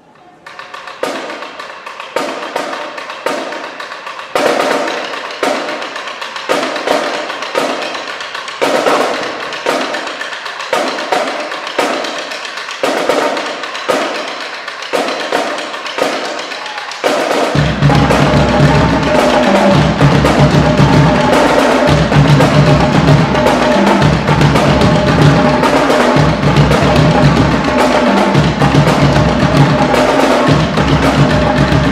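A marching drumline playing. For the first 17 seconds or so it beats out spaced accents about once a second with no bass underneath; then the bass drums come in and the whole line plays loud and full.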